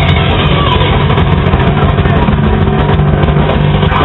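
Rock band playing live at full volume: distorted electric guitars, bass guitar and drum kit in a loud, dense, unbroken wall of sound.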